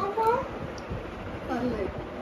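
Two short, high-pitched, voice-like calls: one rising right at the start and one falling about one and a half seconds in.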